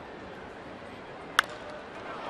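Crack of a wooden baseball bat driving a pitched ball hard, a single sharp crack about one and a half seconds in, over steady ballpark crowd noise.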